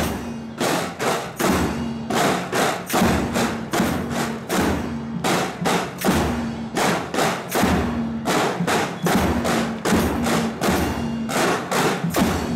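School marching drum corps playing a steady cadence: rapid snare drum strokes with deeper drum beats repeating in an even rhythm.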